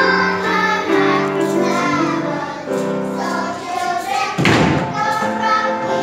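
Children's choir singing with musical accompaniment. A short, loud thump breaks in about four and a half seconds in.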